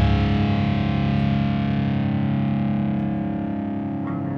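Distorted electric guitars holding one chord through effects, ringing on and slowly fading with no new strokes.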